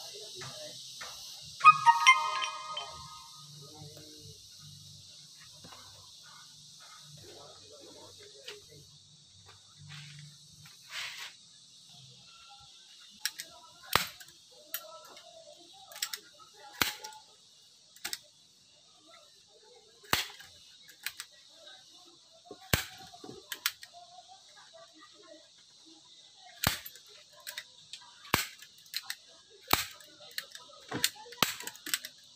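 Staple gun driving staples through upholstery fabric into a sofa frame: a series of sharp snaps, one every second or two, through the second half. A brief loud ringing tone sounds about two seconds in, and a high steady buzz fades out over the first half.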